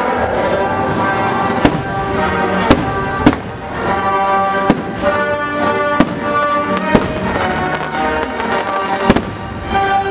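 Fireworks shells bursting over a sustained music soundtrack, with about seven sharp bangs at uneven intervals.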